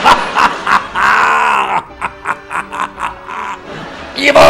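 A man's loud, exaggerated villainous laugh: a drawn-out cry about a second in, then a run of short, rapid bursts.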